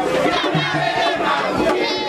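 A crowd at a Vodou ceremony singing and shouting together, many voices overlapping at a steady level, with a few sharp claps or knocks among them.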